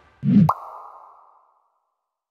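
A short logo sound effect: a quick upward-swooping pop ending in a snap, followed by a fading ring for about a second.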